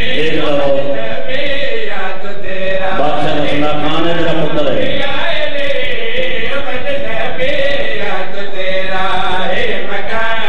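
Men's voices chanting a slow, drawn-out melodic recitation through a microphone and loudspeaker, the held notes gliding up and down in long phrases.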